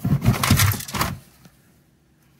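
Hard plastic toy pieces clattering and knocking together as a hand rummages through a cardboard box full of them, dying away about a second and a half in.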